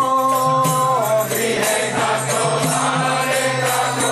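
Devotional kirtan: group chanting of a mantra with jingling hand cymbals and a steady drone underneath. A lead voice holds a long note for about the first second, then the chanting voices carry on together.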